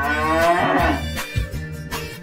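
A cow mooing once, one long call in the first second, over cheerful background music.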